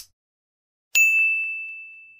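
Subscribe-button animation sound effect: a short click at the start, then about a second in a single bright bell-like ding that rings on and fades slowly.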